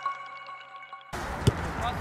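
Last chime notes of an intro jingle fading out, cut off about a second in by the open-air sound of a football match. Soon after, a single sharp thud of a football being kicked stands out over players' voices.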